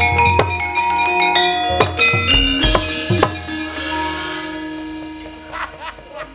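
Gamelan music: drum strokes and ringing struck metal keys, closing on a deep gong stroke about two and a half seconds in, after which the tones slowly fade away.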